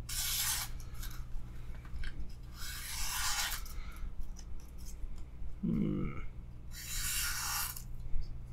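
A Zero Tolerance 0235 slipjoint's 20CV steel blade slicing through paper, three separate cuts each lasting under a second: one at the start, one about three seconds in, one near the end. It is a paper-slicing test of how sharp the edge still is.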